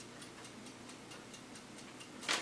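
Faint, even ticking, several ticks a second, over quiet room tone.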